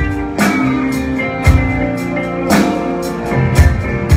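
Live rock band playing an instrumental passage between vocal lines: electric guitars and keyboard holding chords over a drum kit, with a cymbal crash near the start and another about two seconds later.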